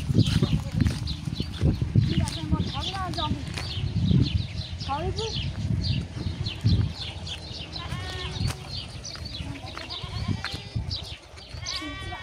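Goats bleating now and then in the background, over a low rumble and knocks that are heaviest in the first half, with many short high chirps throughout.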